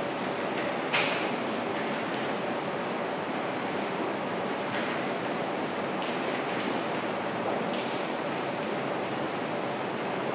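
Steady hiss of room noise, with a sharp short tap about a second in and a few fainter clicks or rustles later.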